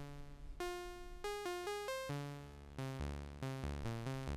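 Doepfer Eurorack modular synthesizer playing a semi-random stepped sequence of synth notes. The pitch comes from three LFOs mixed and run through a quantizer. The notes jump between pitches every few tenths of a second, and a little past halfway the sequence moves lower and quicker over a pulsing bass.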